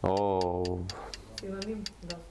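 Stopwatch ticking sound effect counting down a timed quiz round, even ticks at about four a second.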